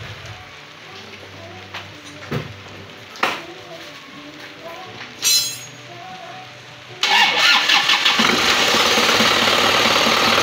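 Isuzu Panther's four-cylinder diesel engine starting about seven seconds in, catching at once and running steadily, freshly fitted with a new water pump. It runs smooth with no rattle.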